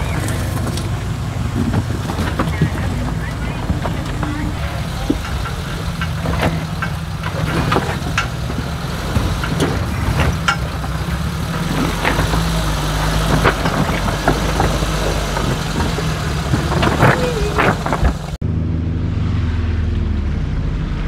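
Suzuki Samurai engines running at low revs while crawling over boulders, with frequent sharp knocks and clicks. Near the end the sound changes suddenly to a steadier, duller engine rumble.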